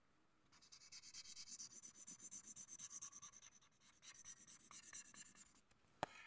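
Black felt-tip marker scratching on paper in quick repeated short strokes, faint, starting about half a second in with a brief pause near four seconds.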